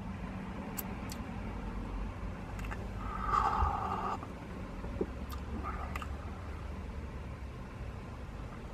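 A slurping sip of a hot drink from a paper cup, about three seconds in, lasting around a second. Under it runs a low, steady vehicle rumble, with a few faint clicks.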